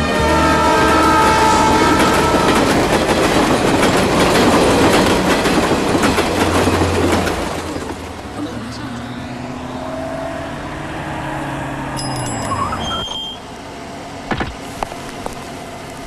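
Loud rumbling noise, with music fading out under it in the first seconds. About eight seconds in it drops to a quieter low drone whose pitch falls and cuts off, followed by a few sharp clicks.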